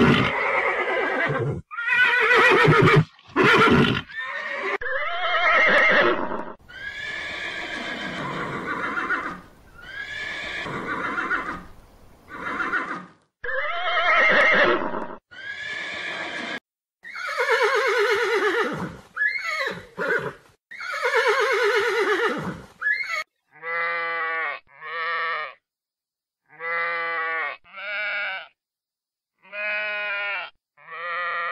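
A horse whinnying and neighing over and over in long calls, some falling in pitch, for about twenty-three seconds; then, near the end, a sheep bleating in short calls that come in pairs.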